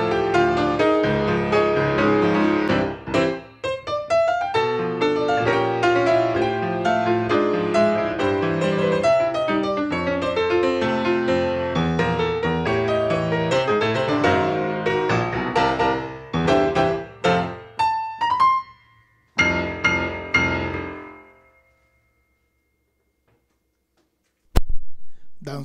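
Solo acoustic grand piano playing a piece in a Cuban rhythm, closing with a burst of short chords and a quick rising run, then a final chord that rings and fades out, leaving near silence.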